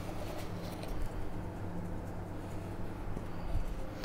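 Dried seasoning being sprinkled over a raw salmon fillet in a metal baking pan: a few faint, light ticks over a steady low hum.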